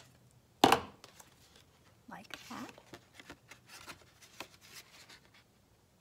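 Stiff paper-plate craft being handled at a table: one sharp knock about half a second in, then a run of light taps, clicks and paper rustling.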